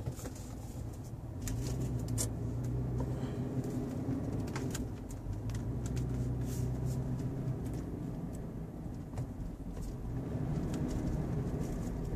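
Cabin sound of a 2015 Toyota 4Runner on the move: a steady low hum from its 4.0-litre V6 and the road, which grows a little louder about a second in, with occasional light clicks.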